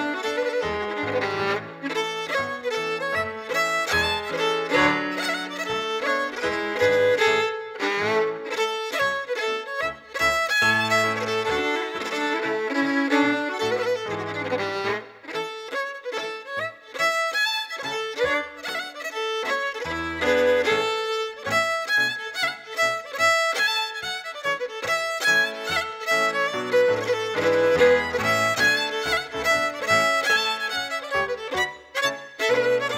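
Fiddle playing a traditional Orkney tune in quick runs of notes, accompanied by chords and bass notes on a Nord stage keyboard.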